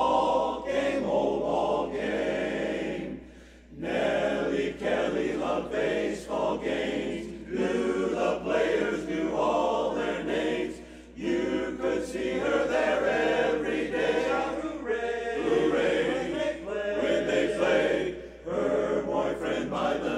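Men's barbershop chorus singing a cappella in close four-part harmony, in phrases with short breaks between them.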